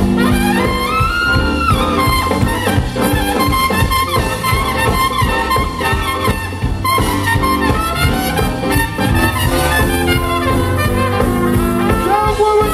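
Live band playing an instrumental break: trumpet and saxophone lines over electric guitar and a steady drum beat.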